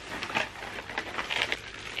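Wrapping paper rustling and crinkling in irregular short crackles as a gift-wrapped package is handled and opened.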